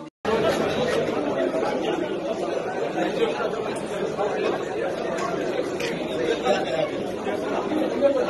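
Many people talking at once in an indistinct, steady hubbub of chatter. It starts abruptly after a split-second dropout.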